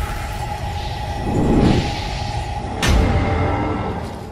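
Logo-intro sound design: a low drone with a steady held tone, a whoosh swelling about a second and a half in, then a sharp impact hit near three seconds that rings on.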